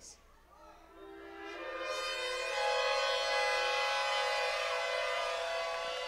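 Several shofars blown together in long sustained blasts. Each horn holds its own pitch, with a few sliding, and they come in one after another from about a second in, building into a dense chord.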